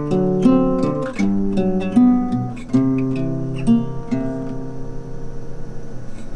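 Acoustic guitar played solo, picked and strummed chords with a few sharp accents, in an instrumental break between sung lines.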